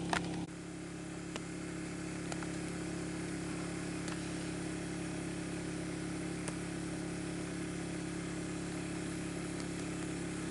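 Steady hum of a small engine running at constant speed, typical of a portable generator powering a moth-trap light.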